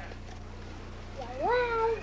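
Bobcat giving one drawn-out meow-like call a little over a second in, rising in pitch and then held.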